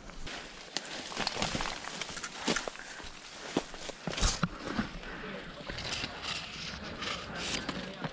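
Leaves and twigs rustling and snapping as someone pushes into dense undergrowth and handles gear, with irregular sharp clicks and cracks throughout and one louder crack about four seconds in.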